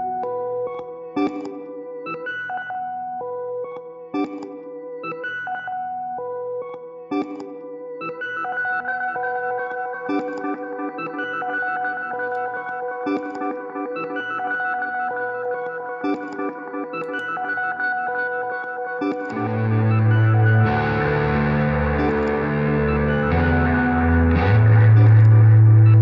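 Electric guitar (a 1959 Fender Jazzmaster) played through effects pedals and a looper: a repeating pattern of plucked, echoing notes, with held tones building up behind it. About 19 seconds in, a loud, low, distorted line of stepping notes comes in on top.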